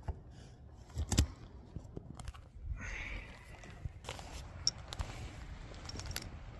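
Handling noise as an elk antler and pack are set down in grass: a few sharp knocks, the loudest about a second in, and a brief rustle about three seconds in.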